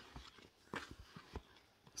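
Near silence: room tone with a few faint, short clicks about a second in.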